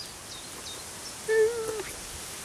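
Outdoor ambience with faint high chirps, and a short steady pitched call or hum about one and a half seconds in, lasting about half a second.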